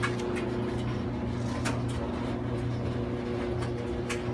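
Electric clothes dryer running: a steady motor-and-drum hum, with a few faint ticks scattered through it.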